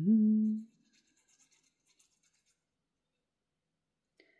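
A woman's short hummed sound trailing off in the first moment, then faint rustling of paper being handled for a couple of seconds, then near silence.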